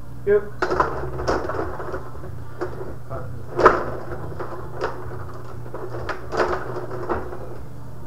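Rod hockey game in play: the rods rattle and slide in the table, and the figures clack against the puck and the boards in irregular knocks, the sharpest a little over three and a half seconds in. A steady low hum runs underneath.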